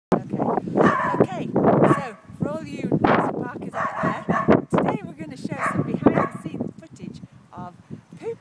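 Several kennel dogs barking and yipping, with high rising-and-falling yelps about two and a half seconds in and again about halfway through. A woman's voice talks and laughs over them.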